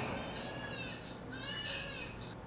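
Newborn baby crying: two high wails, the second starting about halfway through.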